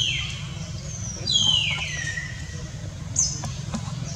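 Baby long-tailed macaque crying: two high-pitched calls that each slide down in pitch, about a second and a half apart, then a short third call near the end, over a steady low hum.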